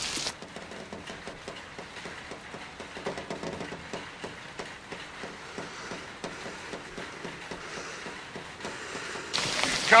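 Muffled, subdued rain hiss with the sound dulled and the top end cut away. About a second before the end, the full sound of heavy rain returns suddenly.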